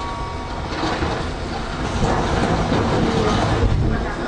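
Train rolling slowly through a station: a low running rumble with wheel clatter, a little louder in the second half.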